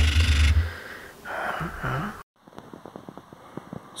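A loud handling thump and rumble on the microphone, then a short breathy snort of laughter. After a sudden cut come only faint scattered clicks.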